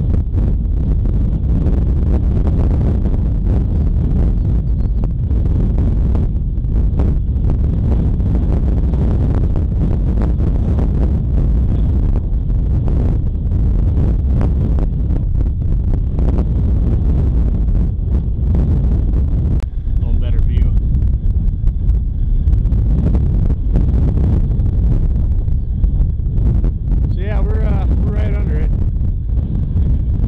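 Strong wind buffeting the microphone under a thunderstorm, a steady low rumble throughout, with faint voices in the second half.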